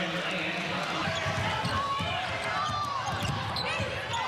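Basketball dribbled on a hardwood court in an arena, with voices in the background.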